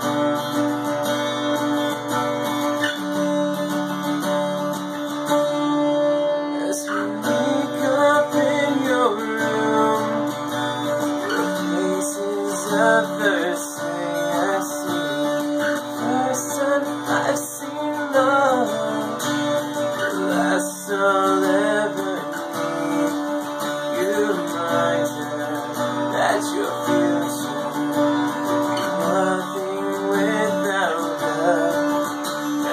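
Acoustic guitar strummed and picked in a steady accompaniment, with a man singing along from about seven seconds in.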